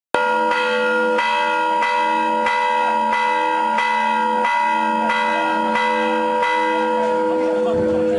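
A church bell rung in steady repeated strokes, about three every two seconds, each stroke ringing on into the next.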